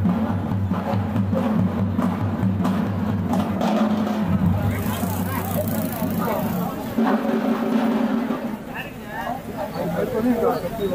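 Percussion-led music with repeated drum hits, with a crowd talking over it from a few seconds in.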